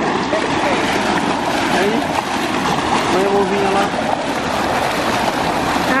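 Hot tub jets churning the water, a loud, steady rushing and bubbling.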